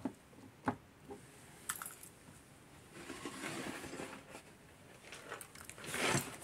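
Light handling noises from small objects being picked up and set down: a sharp click about a second in, a few more light clicks, and soft rustling in the middle.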